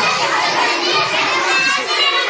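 A crowd of children talking and calling out at once: dense, steady, overlapping chatter of many high young voices in a classroom.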